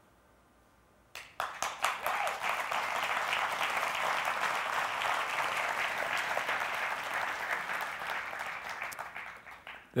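Congregation applauding. It starts suddenly about a second in, after near silence, holds steady, and tails off near the end.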